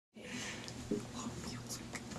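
Faint whispering and hushed voices over a low, steady room hum, with a small click or two.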